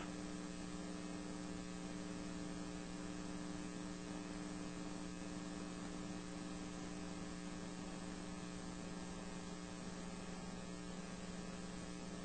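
Steady electrical mains hum with a faint hiss on an open teleconference audio line.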